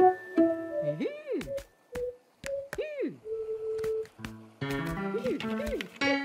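Playful cartoon music with short held notes, twice broken by a swooping sound that rises and then falls. Light clicks and taps are scattered through it.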